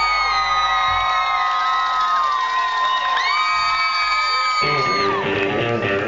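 Live rockabilly band in a break: the bass and drums drop out about a second in, leaving two long, held whooping calls, each gliding up at the start and down at the end. About four and a half seconds in, the upright bass, drums and guitar come back in with a beat.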